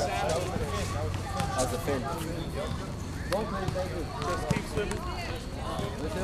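Background chatter of several voices, with a few sharp knocks, the loudest about four and a half seconds in.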